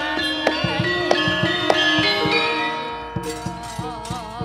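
Javanese gamelan accompanying a shadow-puppet play: bronze metallophones and gongs ring in an even beat under a wavering melody line. About three seconds in the music grows softer and the strokes come faster.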